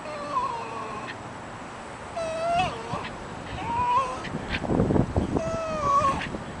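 Small terrier whining and squealing in short high-pitched cries, four times, while tugging on a toy. A burst of rough, low noise comes about five seconds in.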